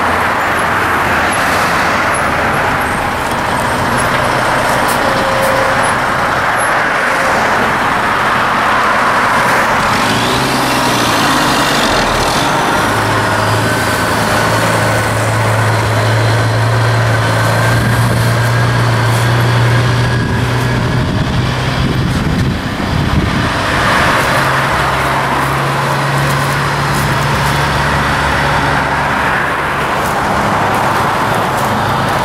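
Diesel engine of a tractor-trailer running at low speed as it drives past and turns. There is a steady low drone through the middle that rises slightly in pitch near the end, over road traffic noise.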